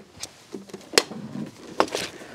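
Light handling clicks and knocks as a stainless-steel coffee machine is lifted up from below a wooden bench, with one sharp click about a second in and another knock near the end.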